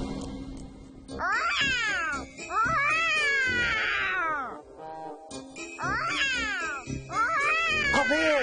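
Cat-like meows and yowls in a cartoon character's voice, imitating a leopard, over background music. There are four calls in two pairs, each sliding down in pitch, and the second is the longest.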